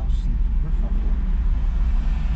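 Steady low rumble of a car's engine and tyres heard from inside the cabin while driving slowly in city traffic.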